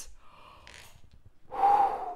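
A person's short, breathy gasp about one and a half seconds in, after a second or so of near quiet with a faint breath.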